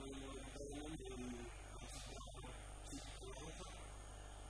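A steady low electrical mains hum under a man speaking quietly.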